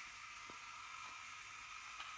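LEGO Spike Prime robot's two drive motors giving a faint, steady whine as the robot drives in a small circle.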